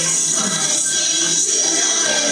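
Live band music playing, with a steady high shimmer of shaken percussion running through it.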